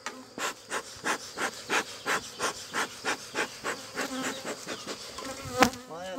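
A beekeeper's bellows smoker being pumped in quick, even puffs, about three a second, over the buzzing of honeybees on an open hive; the puffing stops with a sharper knock just before the end.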